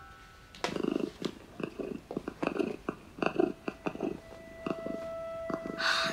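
Cartoon pet triceratops purring drowsily as it settles to sleep: a rough, rattling purr that starts about half a second in and keeps going in uneven pulses. A single held tone joins near the end.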